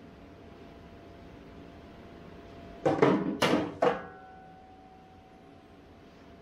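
Three loud scuffs right at the microphone, packed into about a second near the middle, typical of handling noise or something brushing close to the mic. Beneath them runs a faint steady hum.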